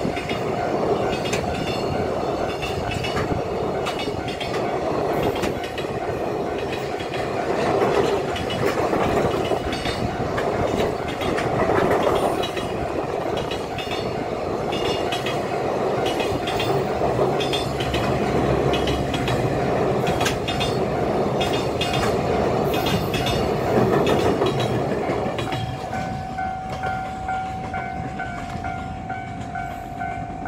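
Koki container flatcars of a JR Freight train rolling past close by: a steady rumble of wheels on rail with clickety-clack over the joints, dropping away near the end as the last wagon passes. A steady repeating ringing tone runs underneath and is heard clearly once the train has gone by.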